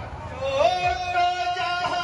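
Amplified male voice singing jari gan, a Bengali folk song, sliding up into one long held note about half a second in.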